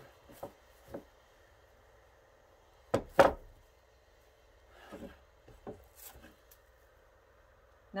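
Two sharp knocks close together about three seconds in, a wooden head block bumping on a wooden worktable, among quieter knocks and the rubbing of felt being handled.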